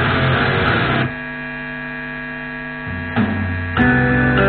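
Distorted electric guitar playing breaks off about a second in, leaving the steady buzzing mains hum of the amplified guitar rig. Strummed guitar comes back in near the end.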